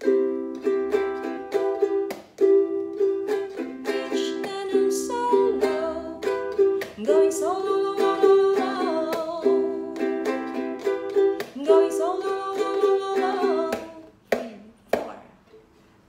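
Ukulele strummed in a steady rhythm through the song's outro chords (E minor, C, A minor), with a woman singing along from about seven seconds in. The strumming breaks off about fourteen seconds in, leaving a few single strokes.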